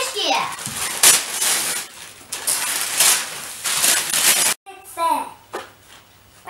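Wrapping paper being ripped and crumpled off a large present in a run of irregular tears, which cuts off suddenly about four and a half seconds in. A child's voice is heard briefly after it.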